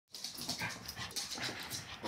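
A Boston terrier panting in quick, short breaths.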